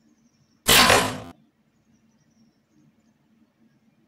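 A single bow shot about a second in: one sudden, loud burst of noise from the bowstring's release and the arrow's flight, dying away within about half a second.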